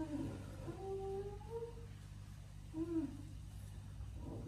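A woman's voice moaning in pain in several drawn-out, closed-mouth moans, one held for about a second, over a steady low hum.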